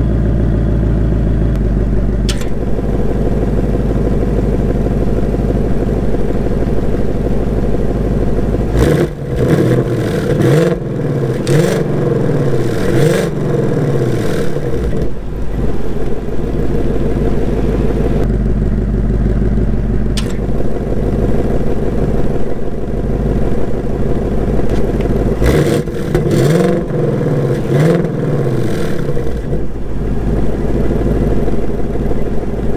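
2024 Ford Mustang Dark Horse's 5.0-litre V8 idling through its quad-tip exhaust, heard from right behind the car. Twice it is blipped in a run of quick revs that rise and fall, first about nine seconds in for some six seconds, then again near the end.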